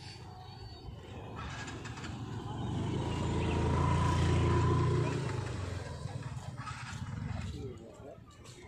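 A motorcycle engine coming close and passing, its low rumble rising to a peak about four seconds in and then fading away, with people's voices in the background.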